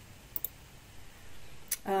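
Computer mouse clicks: a quick double click about half a second in and a single click near the end.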